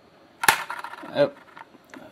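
A single sharp click about half a second in as the arm of a homemade magnet wheel is dropped, followed by a few faint ticks. The arm, merely dropped, does not get enough of a run to carry past the magnets.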